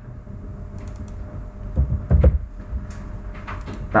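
Light clicks of a computer keyboard and mouse, with a couple of low thumps about two seconds in.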